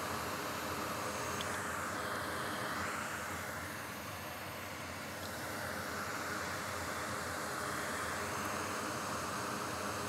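Fan noise: a steady hiss of moving air with a faint low hum beneath it, easing slightly in the middle.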